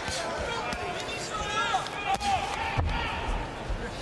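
Boxing gloves landing punches in a few dull thuds, the clearest about two and three seconds in, over arena crowd noise with shouting voices.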